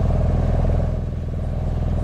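Small motorboat's engine running steadily as the boat cruises across the lagoon, a constant low drone with a fast, even pulse.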